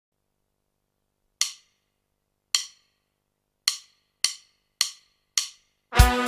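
Count-in of six sharp wood-block-like clicks: two slow, then four twice as fast. They lead straight into the band starting up.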